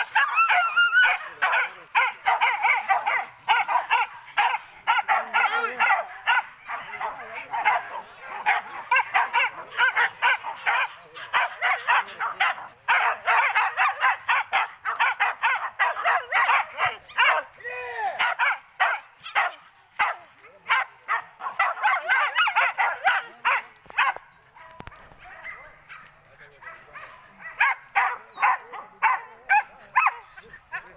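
A pack of hunting dogs barks and yelps almost without pause in a fast, overlapping chorus, with a few drawn-out yelps among the barks. The barking thins out for a few seconds late on, then picks up again.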